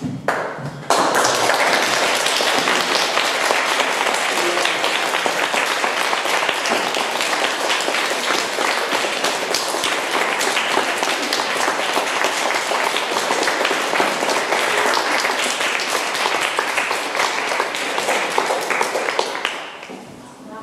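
Audience applauding, starting abruptly about a second in and dying away near the end.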